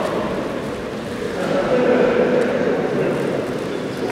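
Audience applauding in a large echoing hall, a steady spell of many hands clapping as an award is handed over.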